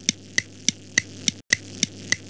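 Clock ticking sound effect: fast, evenly spaced ticks about three a second over a faint steady hum and hiss, briefly cutting out about halfway through.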